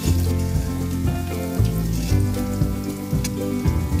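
Boiled baby potatoes sizzling in hot oil in a steel kadhai, a steady frying hiss with scattered small pops. Background music with sustained low notes plays underneath.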